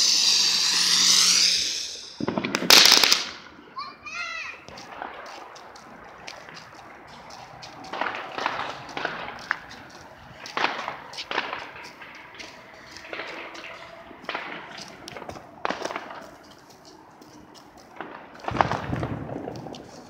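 Ground fireworks going off: a spark fountain hissing with a warbling whistle for about the first two seconds, then a loud bang, then scattered pops and cracks at intervals through the rest.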